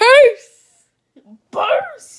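A girl's loud, high playful squeal that rises in pitch and breaks off after about a quarter second, then a second, shorter cry falling in pitch about a second and a half in.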